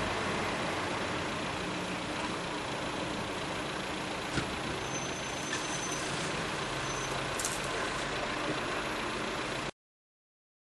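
A flatbed tow truck's engine running as it pulls away, over a steady hiss of background noise, with a sharp click about four seconds in. The sound cuts off abruptly just before the end.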